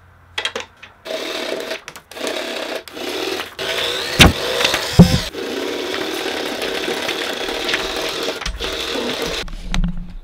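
Handheld money gun's motor whirring as it spits out paper bills: a few short bursts at first, then one long steady run that stops shortly before the end. Two sharp knocks stand out about four and five seconds in.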